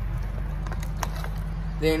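Plastic MRE pouches and their packaging rustling and clicking faintly as they are handled, over a steady low rumble; a man's voice starts near the end.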